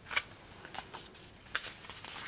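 Paper pages of a small coloring book being handled and turned: a few short, crisp rustles, the sharpest just after the start and about one and a half seconds in.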